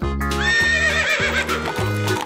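A horse whinnying: one wavering call that falls in pitch, over children's background music with a steady beat.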